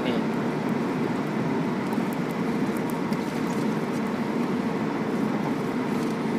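Steady low-pitched background noise, even throughout, with no distinct events.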